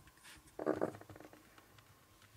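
A young brown bear cub makes one short, rapidly pulsing vocal sound about half a second in, lasting under half a second.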